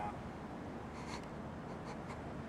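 Faint steady background noise with a soft, brief rustle about a second in and another near the end.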